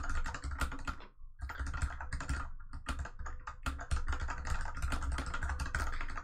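Fast typing on a computer keyboard: a dense, quick run of keystrokes, with a short pause a little after the first second.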